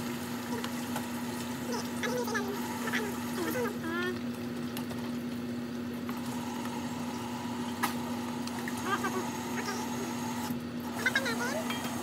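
Laing (taro leaves in coconut milk) simmering in a frying pan while a plastic slotted ladle stirs and scoops through it, over a steady hum. Faint voices come in now and then.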